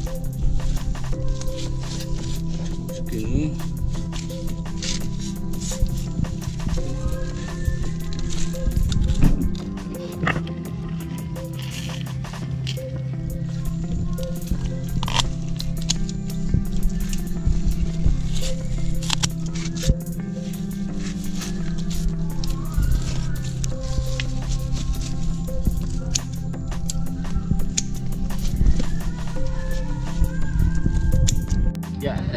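Background music with sustained notes throughout. A few sharp clicks over it are snips of pruning shears cutting bonsai roots.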